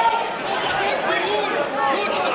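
Many voices talking and shouting over one another at once: ringside spectators calling out during a grappling exchange, with no single voice standing out.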